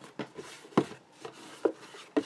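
Stiff card and greyboard panels being handled and pressed on a cutting mat: three light knocks, the middle one loudest, with soft rubbing and rustling of card between them.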